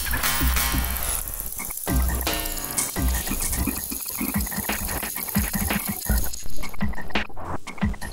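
Electronic music made of dense clicks and short, croak-like downward-gliding low tones over intermittent deep bass pulses.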